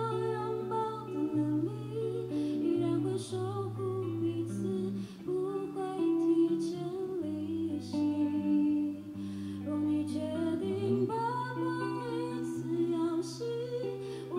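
A woman singing a song with long held notes, accompanied by guitar.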